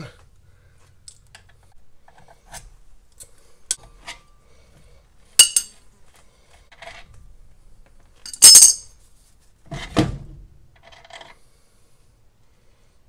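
Light metallic ticks and clinks as the castle nut is turned off a Ford Model A front wheel spindle by hand. There are two sharp, loud clinks about five and a half and eight and a half seconds in, and a duller knock near ten seconds.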